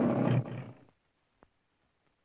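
A lion's roar, the studio-logo roar heard at the start of MGM releases. It ends in a short final roar that fades out within the first second.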